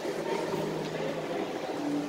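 Indistinct voices of visitors in a large hall over a steady low hum.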